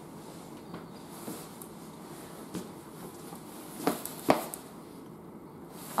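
A few short, sharp knocks over quiet room tone, the two loudest about four seconds in.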